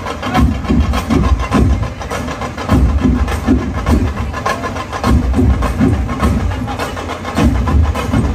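A large troupe of folk drums playing a loud, driving rhythm of heavy low beats with sharp strokes on top, heard from among the audience.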